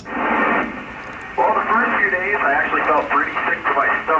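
An amateur radio downlink from the International Space Station heard through a receiver's loudspeaker. A rush of static hiss comes as the signal opens, then a man's voice, narrow and tinny over the radio, begins answering about a second and a half in.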